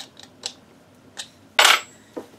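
A small metal tool part set down on a wooden workbench: a few light clicks, then a sharp metallic clink with a brief ring about one and a half seconds in.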